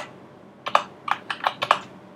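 Typing on a computer keyboard: a short run of about seven keystrokes, starting a little under a second in.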